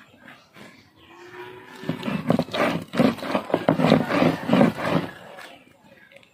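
Stone roller ground back and forth over a granite grinding slab (ammikkal), crushing wet leaves into a paste: a run of rough grinding strokes, a few a second, starting about two seconds in and stopping near the end.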